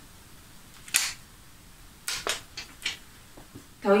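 Clicks and taps of a small cardboard eyeshadow palette being opened and handled: one sharp click about a second in, then a quick run of four or five lighter clicks.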